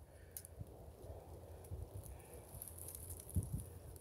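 Quiet outdoor background with a few faint soft thumps, one about two seconds in and two close together near the end.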